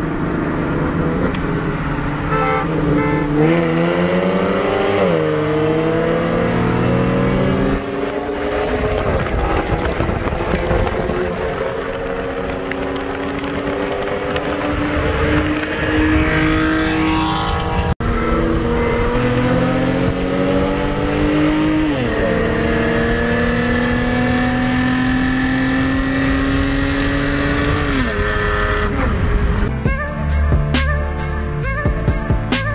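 Turbocharged four-cylinder engine of a 2018 Hyundai Elantra Sport accelerating hard, heard from inside the cabin. Its pitch climbs steadily and drops back at each upshift, several times over.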